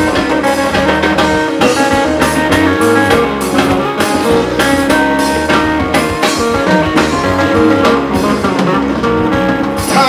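Live band playing an instrumental passage, with guitar and drums keeping a steady beat.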